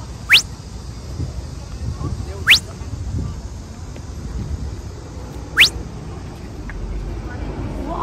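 Three quick, sharp upward-sweeping whistle sound effects, one near the start, one about two and a half seconds in and one about five and a half seconds in, over a steady rumble of street traffic.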